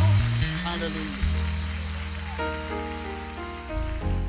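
Closing chords of a live gospel band, with held bass and keyboard tones and a couple of chord changes, fading after the singer's last note, over a steady hiss of room or crowd noise.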